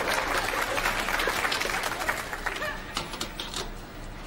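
Studio audience laughter that fades through the first half, then a bar of soap scraped quickly several times across a metal hand grater.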